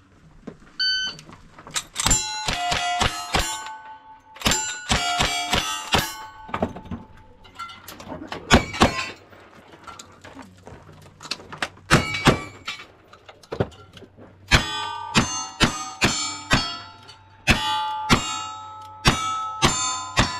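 A shot-timer beep, then a long string of gunshots fired in quick runs with short pauses, each hit followed by the ring of steel targets.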